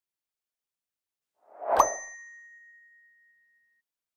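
Notification-bell 'ding' sound effect: a short swell ends in one bright ding about two seconds in, its tone ringing out and fading over about two seconds.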